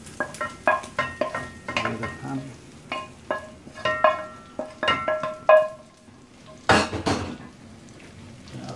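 Wooden spoon knocking and scraping against a non-stick frying pan as browned lamb mince is tipped and scraped out into a pot; many short knocks, several leaving the pan ringing briefly. A louder, brief clatter comes near the end.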